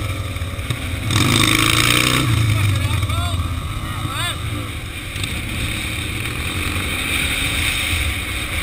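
Harley-Davidson cruiser's V-twin engine running on the road, with wind rushing over the mic; it grows louder for about a second from roughly a second in.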